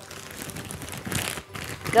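A thin plastic food bag crinkling and rustling as it is squeezed and handled in plastic-gloved hands, loudest a little over a second in.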